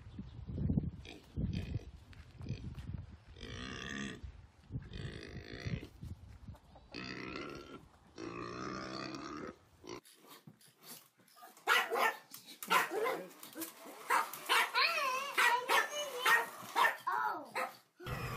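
A pig grunting, broken by several longer squealing calls. About ten seconds in the sound changes to high, wavering whines and yelps mixed with quick clicks.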